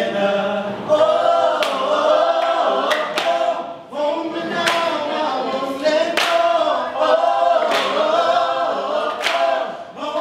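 A group of voices singing a song a cappella in harmony, with a sharp clap-like beat about every second and a half.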